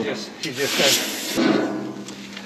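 A steel cutting-torch head sliding along a steel angle-iron guide on a steel plate: a hissing scrape of metal on metal that starts about half a second in and stops abruptly after about a second.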